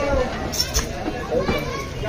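A crowd of voices talking over one another, children's voices among them, with no single speaker standing out. Two sharp clicks come a little past half a second in.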